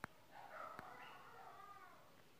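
A faint animal call, drawn out for about a second and a half and wavering in pitch. A sharp click comes just before it and another about a second in.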